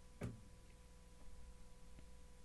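Near silence: faint room tone with a steady electrical hum, and a single short click about a quarter second in.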